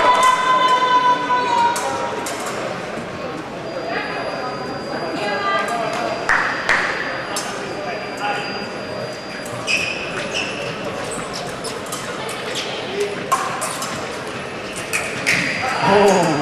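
Sounds of a foil fencing bout in a large, echoing sports hall. A steady high-pitched sound lasts about two seconds as a touch lands at the start. Scattered sharp clicks and taps from blades and footwork on the piste follow, with a thin high tone for several seconds in the middle.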